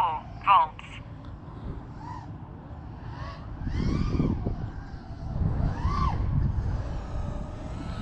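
Faint whine of an FPV quadcopter's motors, its pitch rising and falling in repeated arcs as the throttle is worked. Low wind rumble on the microphone swells around the middle and again later.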